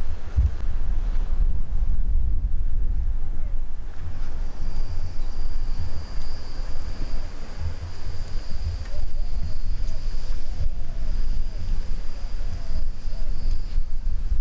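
Wind buffeting the microphone: a loud, uneven low rumble that rises and falls with the gusts. A steady high-pitched whine joins about four seconds in.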